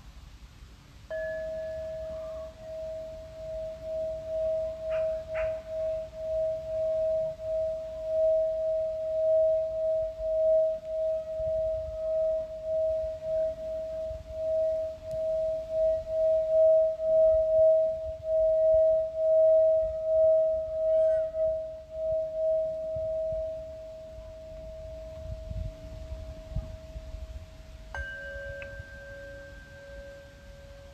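Metal singing bowl sounded about a second in and then played around its rim, giving one steady ringing tone that swells in pulsing waves, grows louder, then fades away. Near the end a second, slightly lower bowl is struck and rings on.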